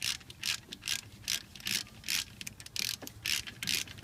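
Ratchet clicking in quick, even strokes, about two and a half a second, as an alternator mounting bolt is turned.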